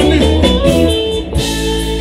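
Live blues band playing an instrumental passage, with electric guitar and bass over the groove and a chord held through the second half.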